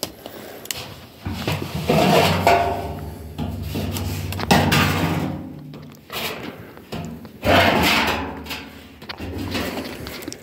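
A galvanized metal barrel being handled and lowered into a larger barrel: irregular metal scraping, rattling and knocks, with louder bumps about two seconds in, midway and again about seven and a half seconds in.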